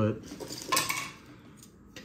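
Trading cards being handled as he flips through a pack: a short crisp rustle about a second in, then faint handling noise.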